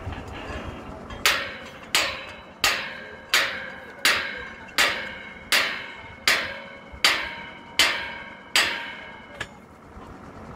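Hammer striking metal at a borewell drilling rig: eleven steady blows, about 1.4 a second, each ringing and fading before the next.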